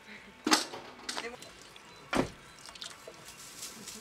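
Two sharp knocks about a second and a half apart, the second one deeper, with a fainter knock between them.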